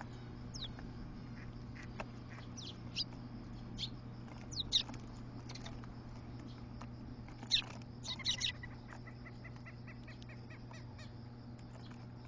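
Eurasian tree sparrows chirping: short, sharp chirps, some single and some in quick clusters, the loudest burst about two-thirds of the way in.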